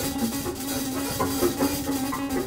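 Jazz piano trio playing live: grand piano, upright bass and drum kit together in a continuous, busy passage.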